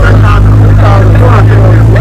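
A vehicle engine's loud, steady low drone, with people talking over it.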